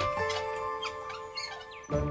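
Background music: long held notes with short, high chirping sounds over them, the bass beat dropping out.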